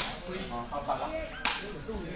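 A woven sepak takraw ball being kicked: two sharp cracks, one at the start and one about a second and a half later, with shouts from onlookers between them.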